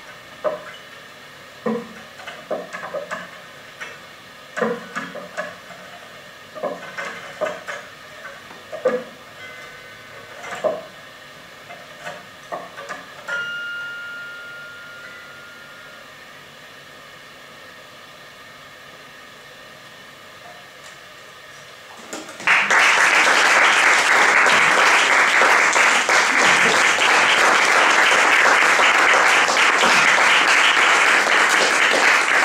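Sparse, isolated plucked and struck notes from a prepared zither, with a short held high tone about halfway through, then a few seconds of near-quiet. About two-thirds of the way in, audience applause breaks out and continues, much louder than the music.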